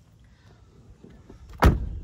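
Rear passenger door of a 2007 Lincoln Navigator L being swung shut, closing with a single solid thud about one and a half seconds in.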